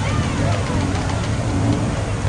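A steady low rumble, with faint voices and calls of people over it.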